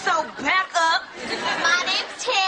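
Only speech: a young female voice talking quickly.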